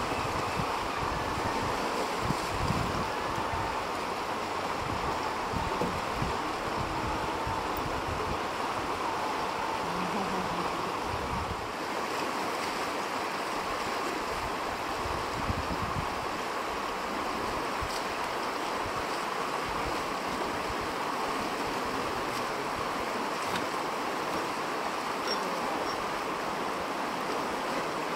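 Steady rush of a fast, shallow river running over a rocky bed, with low wind buffeting on the microphone that comes and goes in the first half.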